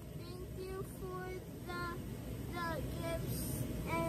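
A child singing a few soft, short notes of a tune, over the steady bubbling of hot tub jets.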